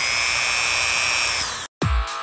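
Dremel rotary tool running at high speed with a steady high-pitched whine. It begins to wind down about a second and a half in and is cut off abruptly. Electronic music with a heavy regular beat starts just before the end.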